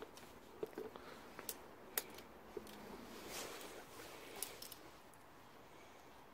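Faint handling noises at a manual wheelchair: a few scattered small clicks and a soft rustle of a padded coat, the rustle swelling about halfway through.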